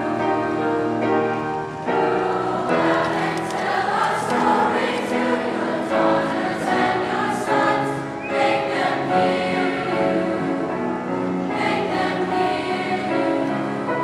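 A large children's choir singing in sustained, held notes, accompanied by a piano.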